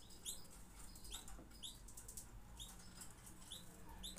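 A small bird chirping faintly: about six short, high chirps spaced irregularly.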